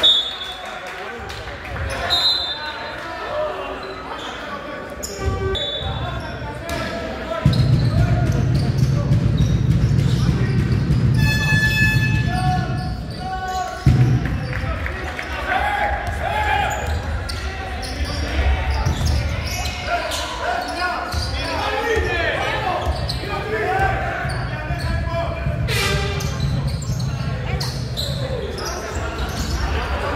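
Basketball game in a gym: the ball bouncing on the hardwood court amid the shouts and talk of players and spectators, all echoing in the hall.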